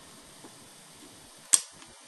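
A single sharp mechanical click about one and a half seconds in: the rewind key of a Sharp RD-426U cassette recorder latching down, which shifts the fast-forward/rewind idler over to the rewind side of the deck.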